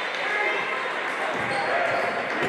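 Echoing gym noise at a basketball game: indistinct voices from the crowd and benches, with a basketball bouncing on the wooden court a couple of times in the second half.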